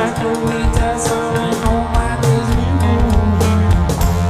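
Live rock band playing: electric guitar, bass guitar and keyboards over a steady drum beat.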